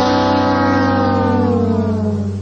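Music sting: a held electric guitar chord over a steady low bass note, its upper notes sliding slowly down in pitch.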